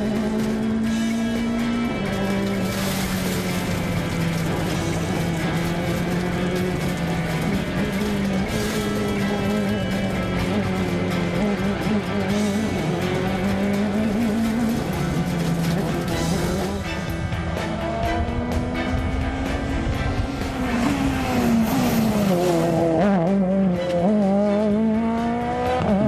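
Ford Fiesta RRC rally car's turbocharged four-cylinder engine heard from inside the cockpit at stage pace, revving up and dropping back again and again through the gears. The rises and drops come quicker and sharper over the last several seconds.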